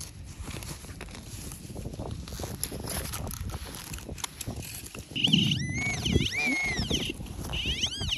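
A serrated hand digger cutting and scraping through soil, with clods knocking and crumbling. About five seconds in, a high warbling tone starts, rising and falling several times until the end.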